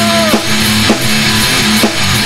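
Loud metal band music: electric guitar and drum kit playing, with a held note sliding down and stopping about a third of a second in.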